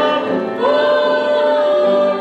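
A gospel hymn sung to keyboard accompaniment in church. The singing glides up into a note held for over a second starting about half a second in.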